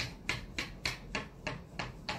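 A dog panting right at the microphone: quick, even, rasping breaths, about three or four a second.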